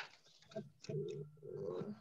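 Pigeon cooing softly, two low notes.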